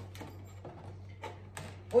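Hands handling a cardboard cake box while trying to open it: a sharp click, then faint scattered taps and scrapes.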